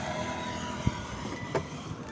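Wind and road noise from riding an Ampere Magnus EX electric scooter at low speed: a steady rushing, with no engine running, broken by two short knocks near the middle.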